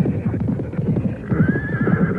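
A horse whinnies in a wavering high call in the second half, over a dense run of low thuds and background music.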